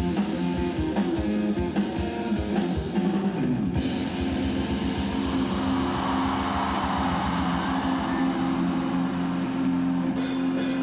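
Live rock band playing: an electric guitar picks a rhythmic figure over drums, then about four seconds in the music changes to long, ringing held chords.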